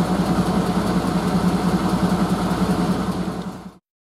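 TU7 narrow-gauge diesel locomotive's V12 diesel engine running steadily with a fast, even throb. The sound cuts off abruptly near the end.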